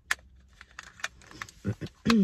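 Light clicks and taps from handling a small plastic wireless microphone, with one sharper click just after the start and fainter ones after it. A brief murmur of voice near the end.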